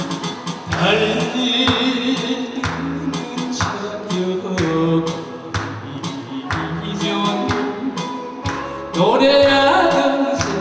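A man singing a song into a microphone over electric bass and a steady drum beat, played through a small amplifier; the voice comes in about a second in and rises strongly again near the end.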